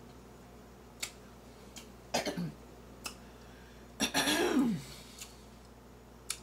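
A woman clears her throat twice, each time with a falling pitch. The first is short, about two seconds in; the second, about four seconds in, is louder and longer. A few faint wet mouth clicks from eating grapefruit fall between them.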